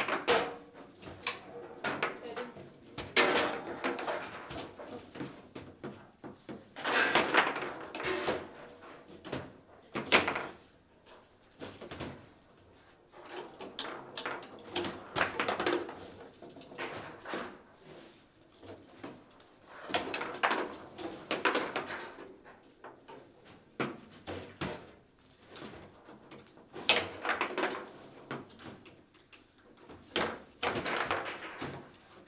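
Foosball table in play: sharp knocks and clacks of the ball striking the hard player figures and table walls, with clusters of rapid rattling as the rods are spun and slammed, and quieter gaps while the ball is held. A goal is scored during these exchanges.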